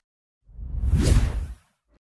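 A single whoosh sound effect, a swelling rush of hiss over a deep rumble, that starts about half a second in and fades out within about a second.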